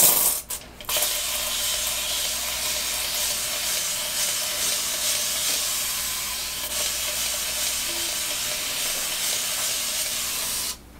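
Flairosol continuous-mist spray bottle spraying a water-based refresh spray onto hair to dampen it: a few short spritzes, then a steady hiss of mist from about a second in.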